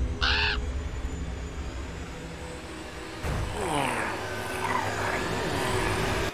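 Spooky outro sound effect: a crow caws once over a low rumbling drone that slowly fades. About three seconds in, a swell of eerie sliding tones and hiss comes in.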